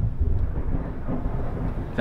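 A low, steady rumble with no words over it.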